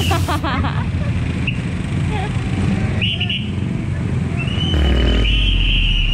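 Street traffic at an intersection: motorcycle engines running with a low rumble that grows louder near the end. A few short high chirps, then a high steady whistle-like tone held for about two seconds from roughly four and a half seconds in.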